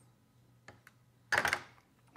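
Faint metallic clicks of a Kord heavy machine gun's bolt and ejector parts being moved by hand in the open receiver: two small ticks a little before a second in, then a brief louder sound with a spoken "there".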